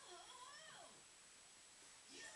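Faint baby vocalizing: a short, bending coo in the first second, then quiet.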